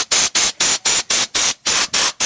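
Rust-inhibitor spray (Fluid Film) hissing out of a hand-held trigger nozzle in quick, even squirts, about five a second.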